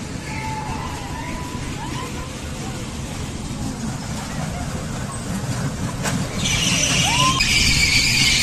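A swinging amusement-park ride in motion, with low rumble from wind and the ride throughout. About six seconds in, loud high-pitched screaming starts and holds as the riders swing up.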